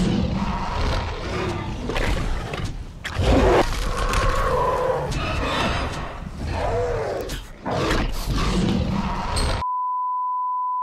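Dinosaur roar sound effects: several long, loud roars with bending pitch over a deep rumble. About nine and a half seconds in they cut off to a steady 1 kHz test-tone beep.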